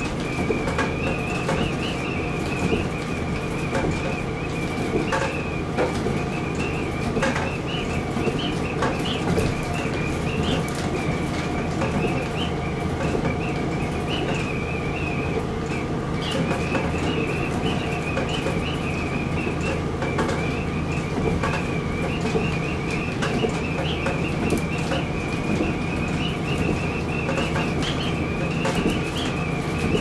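KiHa 40 diesel railcar under way as heard from the cab: a steady engine and running drone, a high wavering whine above it, and frequent scattered clicks and knocks from the running gear.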